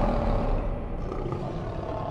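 Lion roar sound effect from an animated channel logo sting, slowly fading away.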